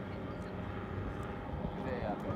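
Many people talking indistinctly at once, with no single voice standing out, over a steady low rumble.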